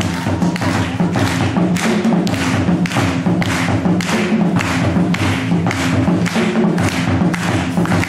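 West African drumming on a djembe and a set of dunun bass drums played with sticks: a steady, driving rhythm of sharp strikes, about three to four a second, over deep drum tones.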